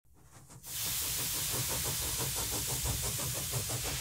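Steady hiss over a low hum, starting about half a second in, with a faint quick regular ticking running through it.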